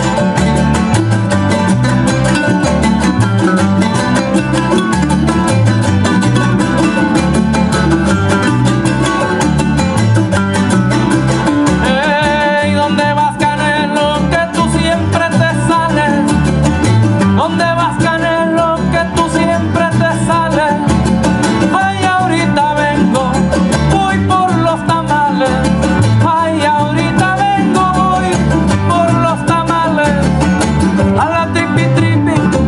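A son jarocho ensemble playing live: jaranas strummed in a steady driving rhythm over a plucked upright bass. A higher melody line comes in about twelve seconds in.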